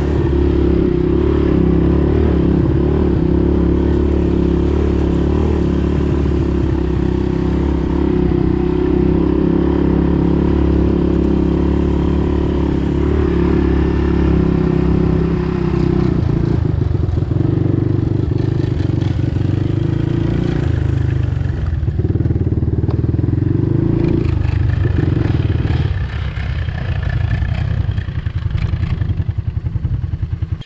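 Honda Big Red ATC 200 three-wheeler's single-cylinder four-stroke engine running under way through tall grass, with vegetable oil as its engine oil and sounding normal. The note is steady for the first half, then changes about halfway in and rises and falls as the trike passes by.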